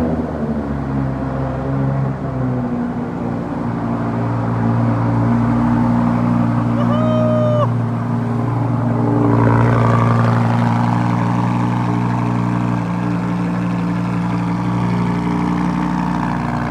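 Lamborghini Huracán's V10 at fast idle right after a cold start, its note easing slightly in the first couple of seconds and then holding steady. A short electronic beep sounds about seven seconds in.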